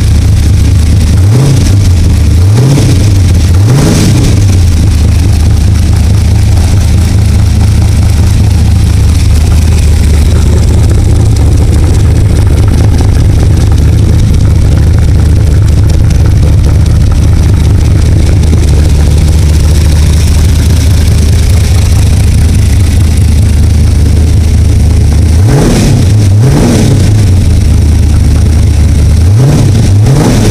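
Chevrolet 327 small-block V8 on an engine run stand, running loud and steady at idle. It is blipped three times in quick succession, about a second apart, in the first few seconds, and three more times in the last five seconds, each rev rising sharply and falling straight back to idle.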